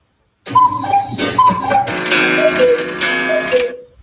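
Cuckoo clocks calling 'cuck-oo', played back from a video: four falling two-note calls, the first two higher and the last two lower over a sustained ringing chime.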